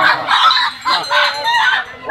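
Desi chicken squawking in alarm while it is grabbed from the basket and held up by hand, three harsh cries in quick succession.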